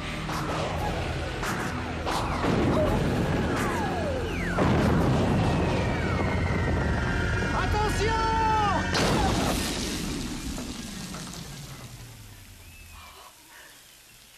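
Sound effects of a space battle: zapping shots with falling pitch, booms and crashes, then a loud crash-explosion about nine seconds in that dies away over the next few seconds.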